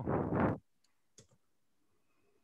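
The end of a man's short spoken reply, heard as a breathy hiss, then near quiet with a few faint clicks a little over a second in.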